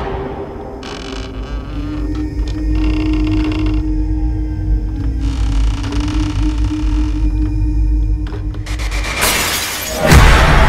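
Suspense film-trailer score and sound design: a deep low drone under a long held tone, with scattered eerie textures. Near the end it builds into a rising hiss.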